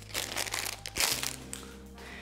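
Crinkling of a clear plastic wrapper as a roll of decorative tape is unwrapped and pulled out of it, mostly in the first second.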